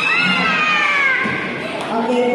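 A single high-pitched vocal cry, like a drawn-out meow, that glides steadily downward for just over a second, heard over background voices.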